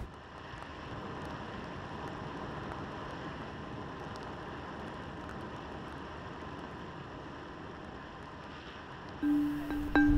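Steady, quiet outdoor street ambience under a soft documentary music bed, with a held low note coming in near the end.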